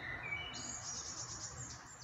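Birds chirping faintly over a steady outdoor hiss.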